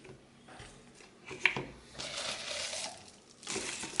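Kale leaves being dropped by hand into a blender cup: soft rustling of the leaves, with one sharp click against the cup about one and a half seconds in.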